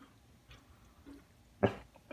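A dog gives a single short, gruff bark near the end, after a quiet stretch.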